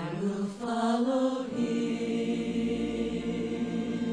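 Voices singing a slow, chant-like melody, settling about a second and a half in on one long held note.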